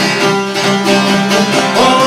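Çifteli and other long-necked Albanian lutes strummed and plucked together in a quick, driving folk rhythm. Near the end a held note comes in over the strings, the start of a male voice singing.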